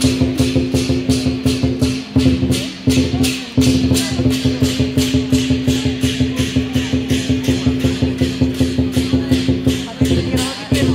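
Dragon-dance music with a fast, even beat of about four sharp strokes a second over sustained low tones; it dips briefly twice a few seconds in.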